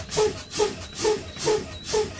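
Truck air brake system being fanned: the brake pedal is pumped and air exhausts in short hisses about twice a second, bleeding system air pressure down toward the low-air warning at around 60 PSI.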